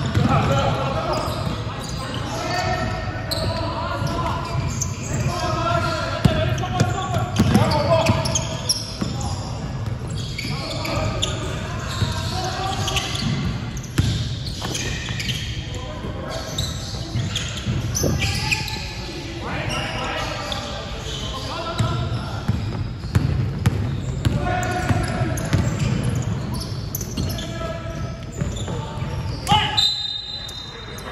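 Basketball bouncing on a hardwood gym floor during play, with players calling out to each other, all echoing in a large sports hall.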